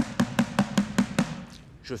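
A plastic dustbin struck rapidly with a wooden stick: a fast, even run of hollow knocks, about five a second, that stops a little after a second in.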